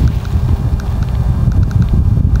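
Wind buffeting the microphone: a heavy, uneven low rumble, with a few faint ticks over it.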